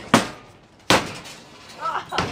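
Two sledgehammer blows on a camper's interior fittings, sharp cracks about three-quarters of a second apart, each with a short rattle after it.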